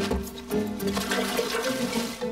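Cartoon sound effect of a sack of food being poured out into a tub, a rushing pour, over background music.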